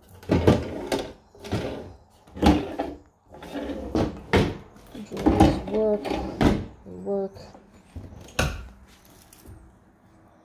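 Kitchen cabinet doors being pulled and yanked open by hand, with repeated irregular knocks and rattles as they bang against their frames.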